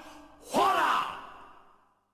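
A man's voice giving one long, breathy exclamation like a sigh, its pitch rising and then falling, fading away over about a second.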